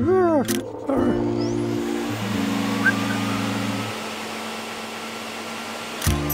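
Vacuum cleaner motor running with a steady rushing noise that starts about a second in, cutting off suddenly at the end as it is switched off. Music with long held notes plays underneath.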